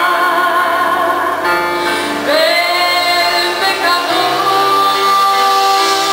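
A woman singing live into a microphone, holding long notes with vibrato, backed by a band with bass guitar; a new note swoops up a little after two seconds in and another begins about four seconds in.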